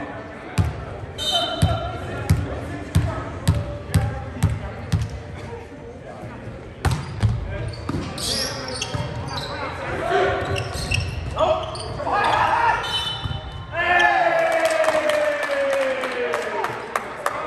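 A volleyball bounced on a hardwood gym floor about twice a second, with hollow thumps that echo in the hall, then a sharp smack about seven seconds in. Players' shouts and calls follow during the rally, ending in one long shout that falls in pitch.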